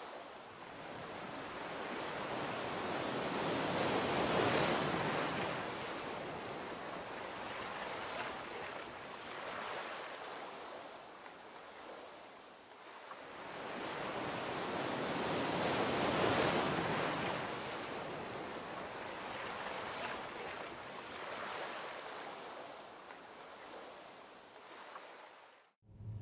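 Ocean surf: waves washing in with a steady hiss, swelling to a peak twice, about twelve seconds apart. It cuts off suddenly just before the end.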